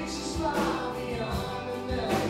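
Live worship band performing: several voices singing together over strummed acoustic guitars, electric guitar, keyboard and drums, with drum hits about once a second.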